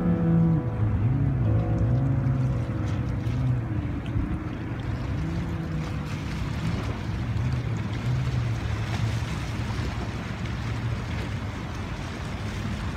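Sea surf and wind with the low drone of a passing motorboat, as a steady wash of noise, under faint background music that fades in the first second.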